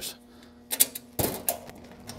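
Stainless steel storage door and latch on a Cash Cow hot dog cart being handled, giving a few sharp metal clicks and knocks starting about two-thirds of a second in.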